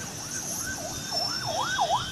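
Emergency vehicle siren sounding a fast yelp, its pitch sweeping up and down about three times a second, over a low background rumble.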